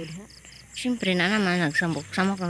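Crickets chirping in an even, high-pitched pulse, about three chirps a second, with a person's voice over them in the second half.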